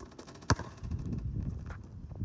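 Basketball striking the hoop with one sharp, loud bang about half a second in, followed by an uneven low rumble.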